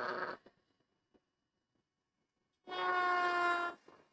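Handheld trim router cutting the edge of a small wooden block: a short burst of cutting noise at the very start, then near the end about a second of steady motor whine, dropping slightly in pitch as the bit takes the wood, that cuts off abruptly.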